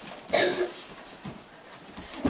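A person's voice: one short, sharp cough-like burst about a third of a second in.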